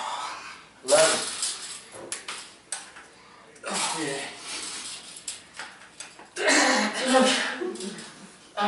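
A man's strained grunts and hard breaths in three bursts as he bends a heavy steel-spring Power Twister bar, with a few light metallic clicks between them.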